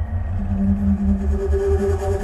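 Progressive metal band playing live: a regular low pulse in the bass, with held guitar notes over it that rise in pitch about half a second in.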